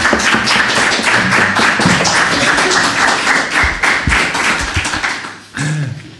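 Audience applauding: a dense run of many overlapping hand claps that fades out about five seconds in.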